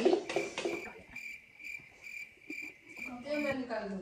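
A cricket chirping in an even rhythm, about four short high chirps a second.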